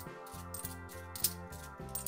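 Stacked 50p coins clicking against each other as they are slid one by one off a stack held in the palm, a few light clinks with the sharpest about a second in, over steady background music.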